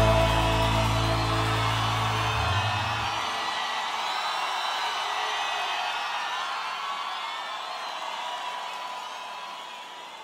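The band's final sustained chord ringing out and dying away over the first three seconds, followed by a large crowd cheering that gradually fades out.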